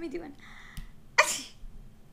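A single short, sharp sneeze about a second in.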